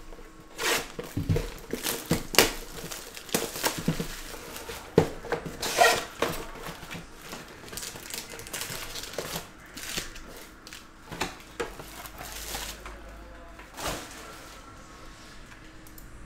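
Plastic shrink wrap crinkling and tearing off a trading-card hobby box, then the cardboard box opened and foil card packs pulled out and stacked: irregular crackles, rustles and small clicks, busiest in the first half and thinning out near the end.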